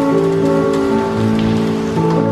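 Steady rain falling on a paved plaza, with music of long, held notes playing over it, the chords changing about once a second.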